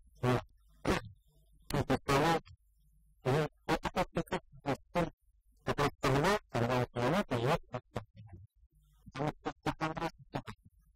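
A man talking in short phrases with pauses between them: speech only.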